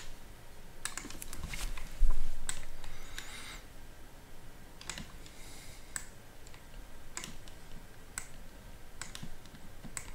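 Scattered clicks of a computer mouse at a desk, roughly one a second, with one loud dull thump about two seconds in.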